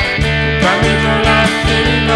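Country-style instrumental passage: acoustic guitar strumming chords under an electric guitar lead line with bent notes.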